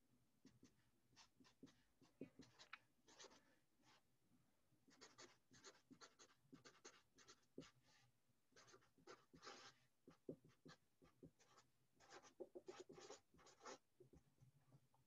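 A Sharpie felt-tip marker writing on paper: faint, quick runs of short strokes with brief pauses between words as a sentence is handwritten.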